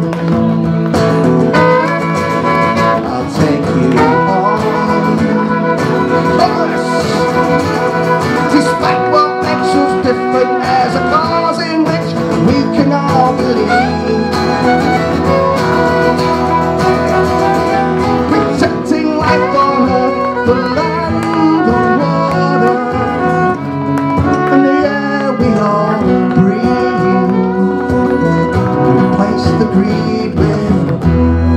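Live folk music on two acoustic guitars, played continuously.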